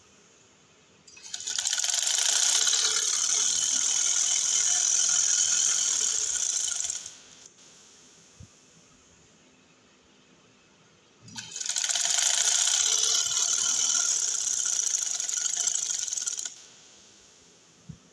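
Sewing machine stitching in two runs of about six and five seconds, each starting and stopping abruptly, with a quiet pause between.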